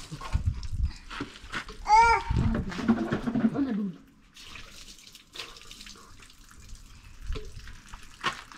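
Water thrown from a plastic jug splashing and running off a motorcycle as it is washed, loudest in the first half. About two seconds in comes a short high call that rises and falls, followed by a lower pitched sound; after that it goes quieter, with a few small knocks.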